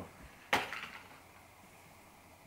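A single sharp snap, like plastic packaging being pulled off a headband, about half a second in.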